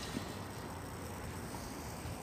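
Faint steady background noise with no distinct sound in it: no voice, bark or knock stands out.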